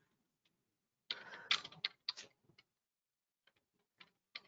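Computer keyboard and mouse clicks heard over a call microphone: a brief flurry of clicking and clatter about a second in, lasting about a second and a half, as the presenter works the controls to move to the next slide.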